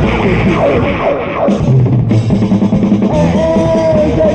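Visual kei rock band in an instrumental passage with the drum kit to the fore: a run of falling notes over the drums in the first second and a half, then a drum break, and a held note coming back about three seconds in.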